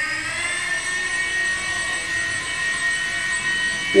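Blade mSR fixed-pitch micro RC helicopter's electric motors and rotor whining as it lifts off and hovers on a fresh battery. The pitch rises a little in the first half second, then holds steady.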